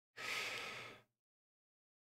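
A man's single short breathy laugh, a puff of air lasting about a second just after the start, then silence.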